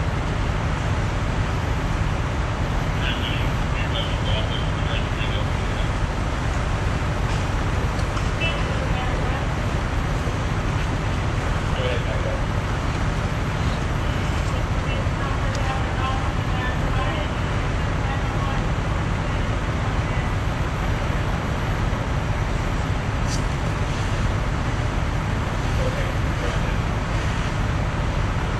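Steady low rumble and hiss of a fire truck's engine running, with faint voices in the distance.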